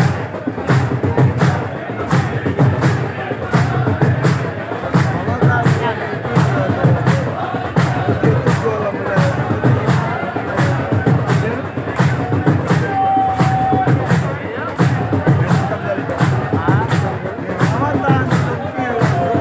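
A large crowd of men doing matam, beating their chests in unison in a steady rhythm, under a chanted noha (mourning lament).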